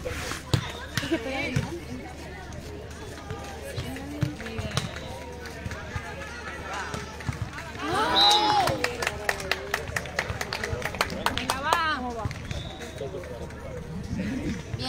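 Voices of players and onlookers calling out around a sand volleyball court, with one loud call about eight seconds in, followed by a quick run of sharp slaps.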